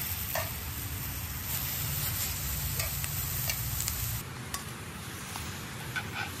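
Chicken frying in a cast-iron skillet over a campfire: a steady sizzle with scattered pops and crackles. A low rumble underneath drops away about four seconds in.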